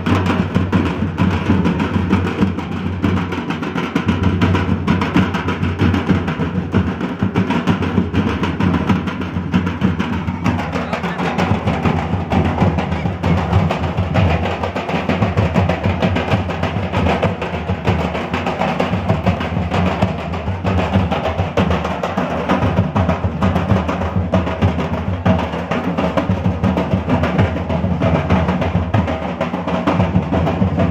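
Several large shoulder-slung barrel drums beaten with sticks in a continuous, loud dance rhythm.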